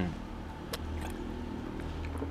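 Steady low motor hum and rumble in the background, with a single faint click less than a second in.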